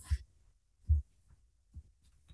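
A pause in speech, mostly quiet, with two soft low thumps about a second apart.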